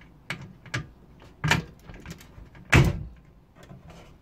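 Hand cutters snapping through the fasteners that hold a vintage PC motherboard in its case: four sharp snaps, the loudest about three quarters of the way in.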